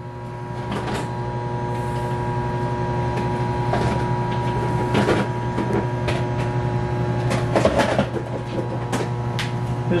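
Microwave oven running with a steady hum, while a few sharp knocks and clatters come from dishes being handled as a bigger bowl is fetched.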